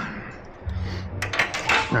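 A ratchet wrench clicking in a quick run of metallic clicks during the second half, as the clutch actuator's mounting bolts are tightened, over a low steady hum.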